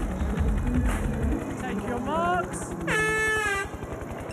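Background music fades out about a second in. Then, a little after two seconds, a single starting air horn sounds once for under a second, its pitch sagging slightly as it cuts off: the signal that starts the triathlon swim. A few short rising tones come just before it.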